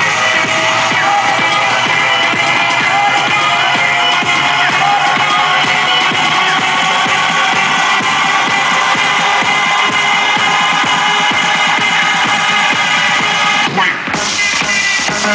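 Electronic dance music played very loud through a truck-mounted wall of car-audio speakers, steady and dense throughout, with a brief drop just before the end.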